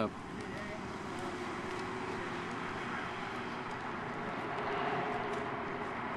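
Street traffic: a vehicle's engine running steadily with road noise, swelling slightly about four to five seconds in.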